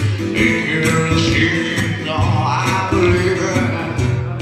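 A man singing live to a steadily strummed acoustic guitar.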